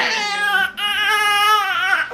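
Infant crying in two long wails, with a short break under a second in and the second wail held steady: distressed crying after her vaccination shots.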